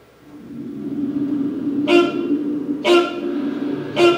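Animatronic Velociraptor's recorded call played through its speaker: a steady pitched growl that swells over the first second, cut by two shriller cries about a second apart.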